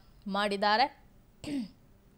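Speech only: a news narrator's voice says a short phrase, then makes a brief throat-clearing sound about one and a half seconds in.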